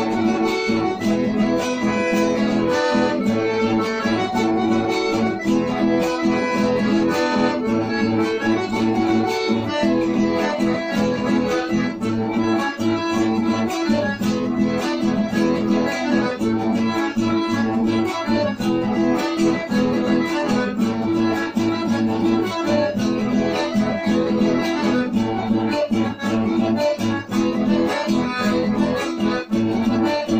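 Button accordion and acoustic guitar playing a chamamé campero, the accordion carrying the melody in sustained chords over the guitar's rhythmic accompaniment.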